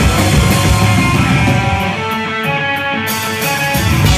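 A heavy rock band playing live and loud, with drums, bass and distorted electric guitar. About two seconds in, the drums and bass drop away, leaving the guitar's held notes ringing, and the full band comes back in at the end.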